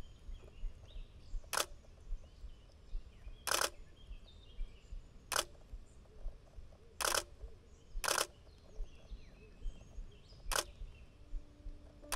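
Shutter of a Nikon D4s DSLR on a Tamron 150-600 lens, fired six times at irregular intervals as single sharp clicks.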